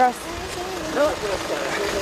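Mainly voices: a short spoken word at the start, then a higher voice calling, over the low steady running of a bus engine.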